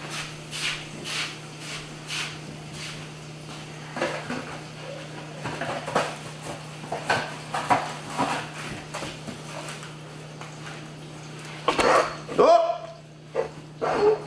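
A steady low hum under a series of short light knocks and clatters, about two a second at first and then irregular. Near the end there is a brief, louder voice-like sound.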